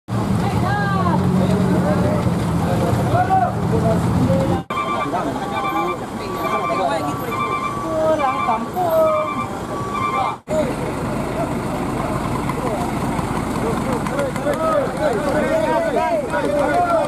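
Heavy truck diesel engine idling with people talking over it. Then, after a cut, a regularly repeating electronic beeping, about two beeps a second, under voices. After a second cut comes a crowd's overlapping chatter.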